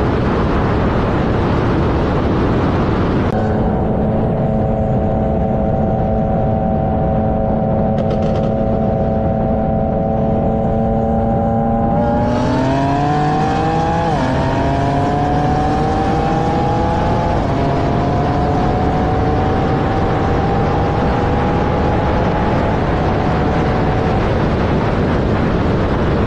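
A performance car's engine at full throttle on the highway, under heavy wind rush. It first holds a steady drone, then from about halfway it climbs in pitch under hard acceleration from about 60 mph, with two brief dips that mark upshifts, and keeps rising towards 158 mph.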